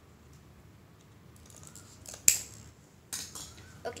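Scissors snipping through thin cardboard: one sharp, loud snip a little after two seconds in, then two smaller, rougher cuts.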